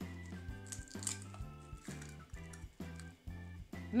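Background music with a steady bass line, and faint clicks and squishes of eggs being cracked into a plastic mixing bowl.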